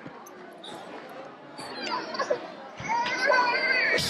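High-pitched children's voices chattering and calling out in a large hall, with a few soft thumps.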